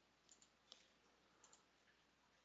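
Near silence, with a few faint, irregular clicks.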